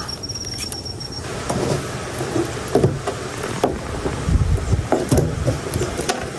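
Handling noise from a green net crab trap being moved about: rustling with scattered clicks and knocks, and a few low thumps about four to five seconds in. A steady high insect trill sounds for the first second.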